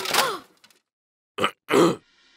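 Short wordless vocal sounds from a cartoon voice: a brief groan that falls in pitch, then two short grunts near the end, the last the loudest.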